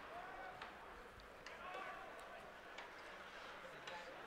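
Faint arena background of a hockey game: distant, indistinct voices and a low murmur, with a few soft knocks.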